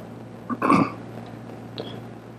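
A brief vocal sound from a person, a little under half a second long, about half a second in, over a steady low electrical hum.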